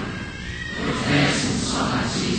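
Choir and congregation singing over the sound system, with a brief high sliding tone about half a second in.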